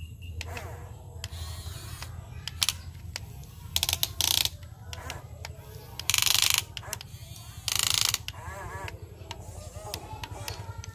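Huina radio-controlled toy excavator's small electric gear motors running as the boom and bucket dig. Loud half-second bursts come as a double about 4 seconds in, then once about 6 seconds in and once about 8 seconds in, over a steady low hum and scattered clicks.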